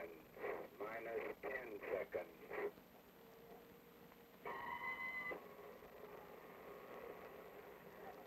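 Radio countdown time signal, the 'gong': one steady electronic beep of just under a second, about four and a half seconds in, marking the next countdown step before a nuclear test shot. Before it, the announcer's voice comes over the radio link.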